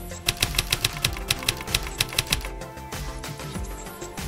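Typewriter key-strike sound effect, a quick run of about a dozen sharp clicks over the first two seconds, laid over background music.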